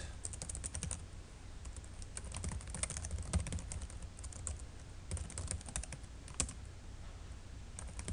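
Computer keyboard being typed on: irregular runs of quick keystroke clicks with short pauses between them, over a low steady hum.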